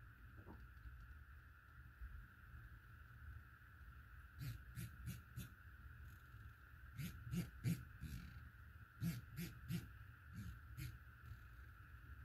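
Windage turret of a Delta Stryker HD 4.5-30x56 rifle scope turned by hand. Its detents give positive clicks in short runs of about four clicks, with pauses between runs, starting about four seconds in.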